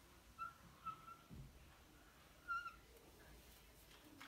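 Faint, short squeaks of a marker pen drawing a wavy line on a whiteboard, three squeaks in all, about half a second, one second and two and a half seconds in.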